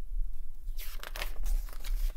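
Pages of a picture book being turned and handled: paper rustling and crinkling with a few sharp crackles, starting about a second in.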